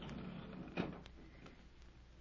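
Steady low hum and faint hiss of an old radio transcription recording, with a couple of faint clicks about a second in.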